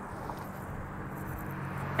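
Steady hum of road traffic on a multi-lane city street, with no single vehicle or sudden event standing out.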